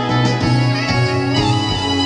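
Instrumental backing track for a show tune, played from a laptop through a PA speaker.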